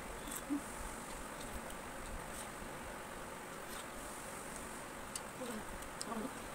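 Quiet wet bites and slurps of people eating juicy watermelon fast, a few faint clicks over a steady high-pitched hiss.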